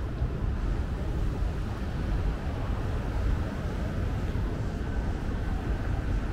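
Steady city street background noise, mostly a low rumble of road traffic on the adjacent street, with no single event standing out.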